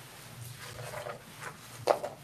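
Quiet meeting-room tone with a faint, low murmur of a voice, then a single sharp click near the end.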